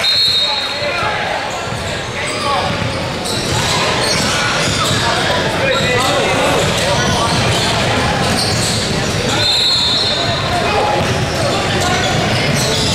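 Indoor basketball gym during a game: many voices talking and calling out across a large echoing hall, with basketballs bouncing on the hardwood floor. A referee's whistle sounds briefly at the very start and again for about a second and a half near the end.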